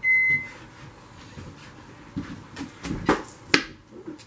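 An electronic beep lasting about half a second at the start. Then a few sharp knife chops on a plastic cutting board as apple is cut, the last one near the end the sharpest.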